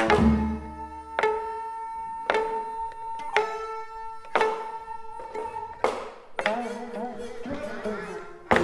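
Live Korean traditional (gugak) music accompanying a dance: sharp struck or plucked notes about once a second, each ringing on as a held pitched tone, with a wavering vibrato note about six and a half seconds in.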